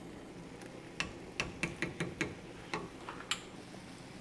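A spoon knocking against small kitchen containers: a run of light, irregular clicks and taps over about two seconds.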